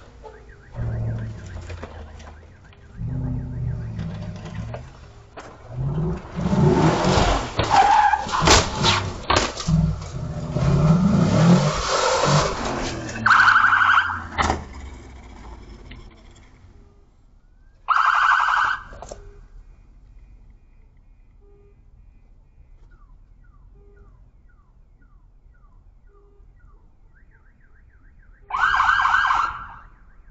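A vehicle's engine revving up and down with sharp bangs and scraping through the first half as it crashes. This is followed by three short siren blasts spread over the second half.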